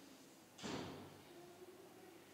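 A single brief soft thud about half a second in, then faint room tone with a low steady hum.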